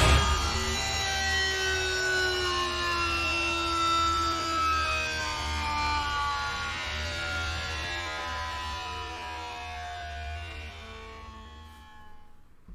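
Outro of a heavy metal song played back: the full band cuts off and sustained notes slowly sink in pitch over a low drone, fading out toward the end.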